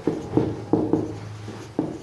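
Felt-tip marker writing on a whiteboard: a handful of short, separate pen strokes, each starting sharply and fading quickly.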